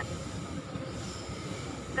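Steady low rumble of a freight train's wagons rolling along the rail line below.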